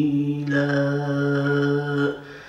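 A man's voice chanting in a melodic religious style, holding one long note at a steady pitch.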